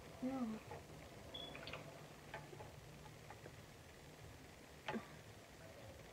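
Faint steady hum of a mini toy washing machine's motor spinning a makeup brush held in its water, with a few light clicks and a sharper click about five seconds in.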